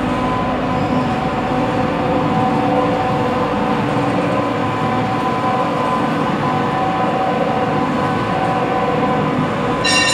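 Soap mixing machine running, its electric motor and gearbox drive giving a loud, steady mechanical hum with several held tones. A brief high-pitched squeal comes right near the end.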